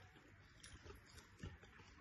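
Near silence with faint eating sounds: mouth noises and fingers picking food off a plate, with a soft low thump about one and a half seconds in.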